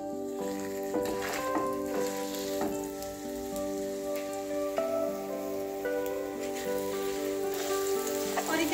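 Mashed sweet potato sizzling in hot ghee in a nonstick frying pan, with a few knocks and scrapes of a wooden spatula as it is broken up. Background music with long held notes plays underneath.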